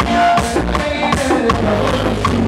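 Live merengue típico band playing: button accordion, saxophone, bass guitar and percussion, with a fast steady beat of about four strokes a second.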